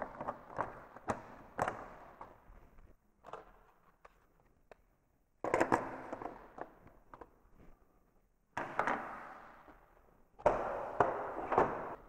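Clicks and knocks of parts being fitted into the blade opening of a SawStop jobsite table saw, in several short bursts that each cut off suddenly.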